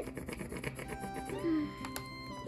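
Background music, with a wax crayon scrubbing back and forth in short rapid strokes on paper laid over a leaf, a leaf rubbing.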